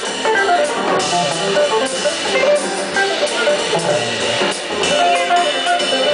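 Live jazz organ trio playing: an archtop electric guitar picking a run of short single notes over organ and a drum kit with cymbals.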